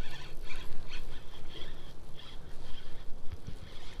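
A spinning reel being cranked hard while a hooked striped bass is reeled in, with squeaky clicks about two to three a second.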